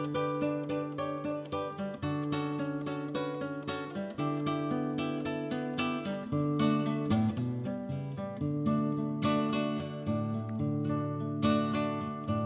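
Acoustic guitar music: an instrumental passage of steadily plucked and strummed notes.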